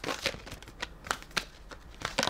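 A deck of tarot cards shuffled in the hand: a string of irregular, short papery clicks and flicks.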